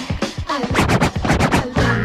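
Funk-based DJ mix with a short burst of turntable scratching in the middle, rapid back-and-forth strokes over the beat, before the record carries on.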